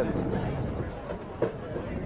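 Outdoor football-field background: a low steady rumble with faint distant voices, and a short knock about one and a half seconds in.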